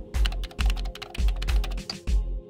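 Background music with a steady bass beat about twice a second, over a rapid run of keyboard-typing clicks: a typing sound effect for on-screen text being spelled out. The clicks stop near the end.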